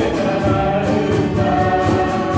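Small mixed choir of men and women singing a Christian song together.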